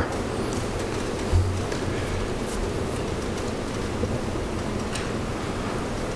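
Steady hiss of background noise with a soft low thump about one and a half seconds in.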